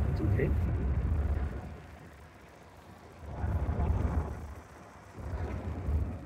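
Tyre and road noise inside the cabin of a Jaguar I-Pace electric SUV driving at speed, with no engine sound. The low rumble swells and fades twice.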